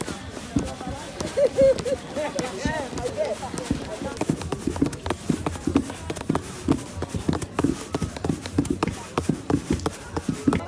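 Wooden pestles thudding into mortars, several uneven thumps a second, as more than one woman pounds acha (fonio) at the same time, with voices talking in the background.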